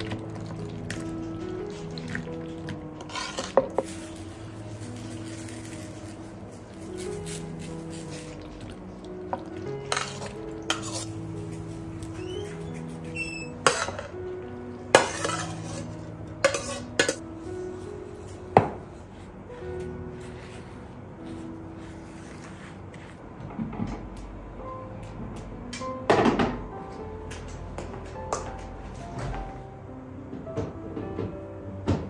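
Scattered clinks and clatter of a metal slotted spoon against a ceramic plate and plastic bowl as pitted sour cherries and sugar are spooned in, over steady background music.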